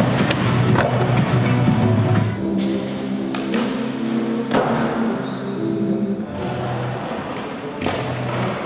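Music with held bass notes, over which a skateboard gives several sharp clacks and knocks as its wheels and trucks hit ledges, coping and the ground. The loudest knocks come about four and a half seconds in and near the end.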